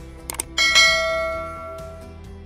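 Two quick clicks, then a bright bell ding that rings out and fades over about a second: the notification-bell sound effect of a subscribe-button animation.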